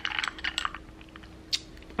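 A metal straw stirring ice cubes in a glass: a quick run of light clinks over the first second, then one last clink about a second and a half in.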